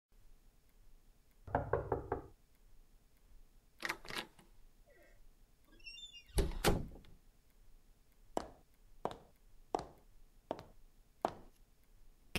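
A quick run of about five knocks on a door, then more door sounds, a faint high clink and a louder double thud. After that come five slow, evenly spaced footsteps, like someone entering the room and walking up.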